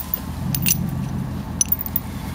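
A few light metallic clicks and jingles as a dog-proof raccoon trap is handled and pushed into the frozen ground, over a steady low rumble.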